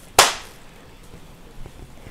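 One sharp smack a moment in, fading within about half a second.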